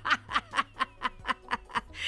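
A woman laughing heartily in a quick string of short bursts, about six a second.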